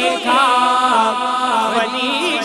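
A man singing a naat, an Urdu devotional song, unaccompanied into a microphone. He holds one long note for about a second and a half.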